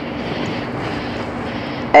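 Steady outdoor background noise: an even hiss with a faint low hum underneath, with no distinct events.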